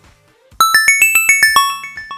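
A short bell-like chime jingle: a quick run of about eight bright ringing notes starting about half a second in, climbing and then falling in pitch, then dying away in fading echoes.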